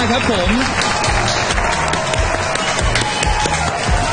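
Applause and clapping over game-show music with a steady beat, greeting the reveal of the winning number.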